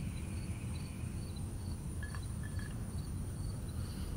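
Outdoor ambience of faint insect chirping, a high pulse repeating evenly about three times a second, over a low steady rumble, with two short chirps around the middle.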